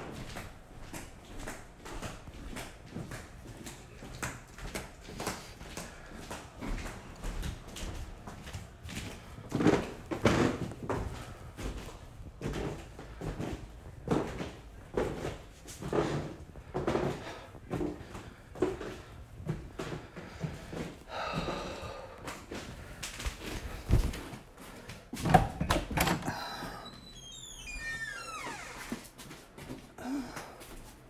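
Footsteps on a wooden staircase, an even run of knocks about one every second. A couple of sharper knocks follow later, then high squeaks gliding down in pitch near the end.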